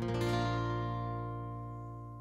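A single chord strummed once on an acoustic guitar, left to ring and fade away slowly.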